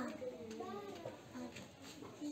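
Faint talking in a small room, speech-like voices in the first second, then quieter.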